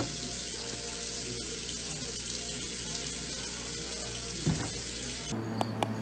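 Water running steadily from a kitchen tap into a stainless steel sink, stopping abruptly about five seconds in.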